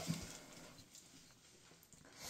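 Mostly quiet room tone with a few faint handling knocks in the first half second, as a cordless drill is picked up.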